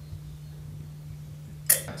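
Quiet room tone with a steady low hum, broken once near the end by a brief, sharp noise.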